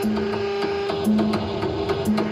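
Industrial electronic music: a fast, machine-like clicking rhythm over a short low synth note that repeats about once a second.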